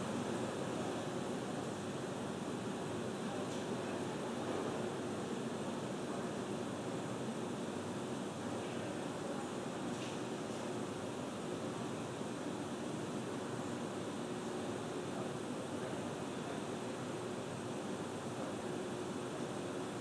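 Steady hiss with a faint low hum underneath, unchanging throughout: the background noise of a launch webcast's audio feed, with no engine sound or voices.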